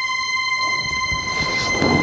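Dramatic soundtrack sting: a steady high-pitched tone with overtones, held throughout, with a whooshing swell that builds near the end.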